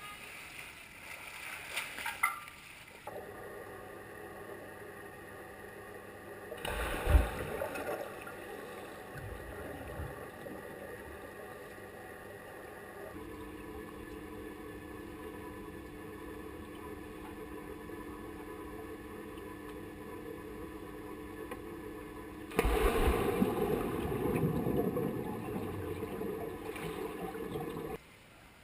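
Swimming-pool water heard by a camera at and under the surface: a swimmer splashing at first, then a muffled underwater stretch with a steady hum and one heavy thump about seven seconds in, then louder splashing for the last few seconds. The sound changes abruptly several times.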